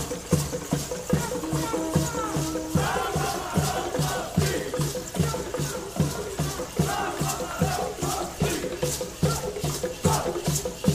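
Gourd maracas shaken in time with a steady low drumbeat, about three beats a second. A group of voices chants over it in two stretches, about three seconds in and again about seven seconds in.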